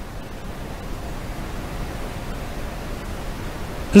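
Steady, even hiss of background noise with a low rumble underneath and no distinct events.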